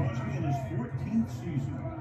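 Football TV broadcast audio playing at a low level: a man's voice calling the play over a steady low background.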